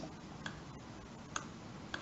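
Three faint, sharp clicks less than a second apart, from moves being made in an online blitz chess game, over low room noise.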